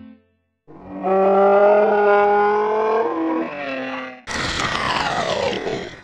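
Experimental soundtrack ending: a guitar chord cuts off, then a short silence. A held, buzzy pitched tone follows for about three seconds and drops in pitch near its end. A harsh, noisy sound then slides downward in pitch to the close.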